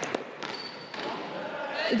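Volleyballs being struck in an echoing gymnasium: a couple of sharp slaps right at the start, then reverberant gym noise with a brief high squeak about half a second in.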